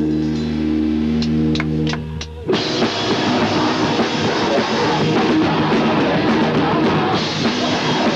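Screamo band playing live: a held, ringing guitar chord with a few sharp clicks, then about two and a half seconds in the whole band crashes in loud with drums and distorted guitars.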